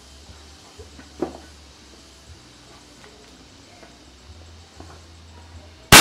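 A quiet stretch, then near the end a single sharp crack: a shot from a locally made Bocap FX Crown-style PCP air rifle with a 500cc air tube, fired at a steel target in a test-shooting session.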